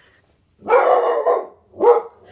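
Pet dog barking loudly: one drawn-out bark starting about half a second in, then a second short bark near the end.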